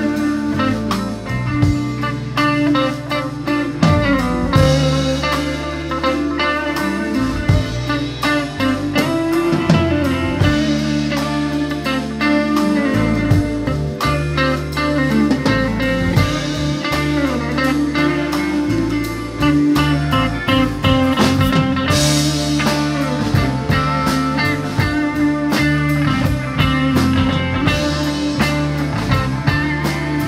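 Live band playing a blues-rock jam, electric guitar to the fore over bass guitar and a drum kit, with a cymbal swell about two-thirds of the way through.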